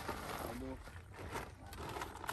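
A short snatch of a voice about half a second in, over a steady low outdoor background, with a few light knocks later on.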